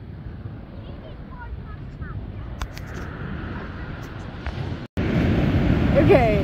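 Ocean surf washing on a sandy beach, a steady noise with wind on the microphone and faint distant voices. Just before the end the sound drops out for an instant and comes back louder, with big waves breaking close by.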